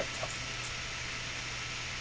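Room tone: a steady hiss with an even low hum underneath.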